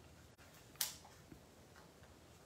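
A brief crackle of a paper backing sheet of mini dimensionals (small adhesive foam dots) being flexed to free one, about a second in, with a faint tick shortly after; otherwise quiet room tone.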